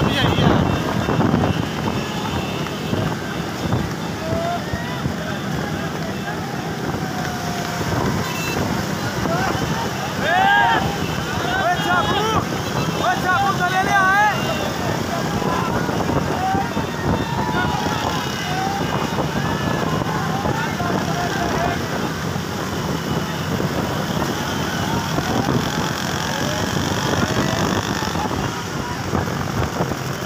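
Steady rumble of cart wheels and traffic on a road, with wind on the microphone, heard from a moving cart. Men shout and call out over it, loudest about ten to fourteen seconds in.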